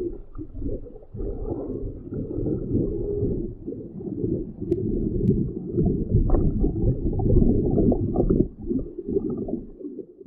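Muffled underwater ambience: deep, irregular rumbling and bubbling with no high frequencies, typical of a diver's regulator bubbles heard through the water. It dies away at the end.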